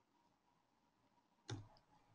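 Near silence, then one short click about one and a half seconds in: a computer mouse click advancing the presentation slide.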